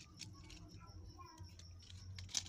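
Faint, scattered clicks and light taps of small plastic parts, a PVC pipe piece and a cut plastic disc, being picked up and handled on a wooden table, over a low steady hum.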